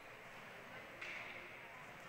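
Faint ice-rink ambience with distant spectator murmur; about a second in, a short hiss of hockey skate blades scraping the ice.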